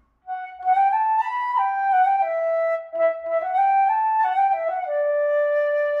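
Flute playing a short stepwise melody of background music, ending on a long held note.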